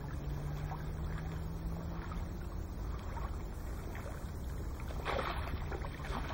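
Water sloshing and splashing around a landing net worked by a wading angler, with louder splashes near the end as the net is lifted clear of the water. A steady low wind rumble on the microphone sits under it.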